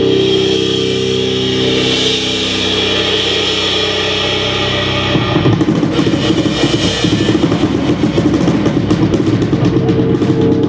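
Live rock band: a sustained chord rings steadily over a wash of cymbals, then about five seconds in the drums and the full band come in with a busy, driving rhythm.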